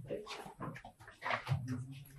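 Indistinct voices talking, with one voice drawn out near the end.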